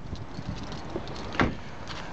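A car's rear passenger door, on a Volvo XC90, shut once about one and a half seconds in, a short thump over a steady outdoor background hiss.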